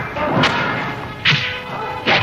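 Dubbed fight-scene hit sound effects: two sharp, whip-like punch or kick smacks about a second apart, the second the louder, over background music.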